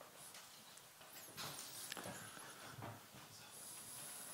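Quiet hall between talks: faint room tone with scattered soft knocks, shuffling and rustles from people moving about, and a faint high hiss that comes in near the end.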